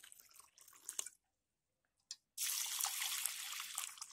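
Water poured from a plastic jug onto raw red rice and lentils in bowls to soak them. A faint trickle in the first second, then a short dead gap, then a steady splashing pour for the last second and a half.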